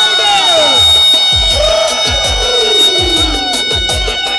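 Loud live dance music: a clarinet playing sliding, bending runs over held tones and a steady low beat.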